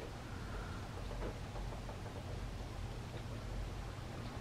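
Quiet room tone: a steady low hum under a faint hiss, with a few very faint ticks.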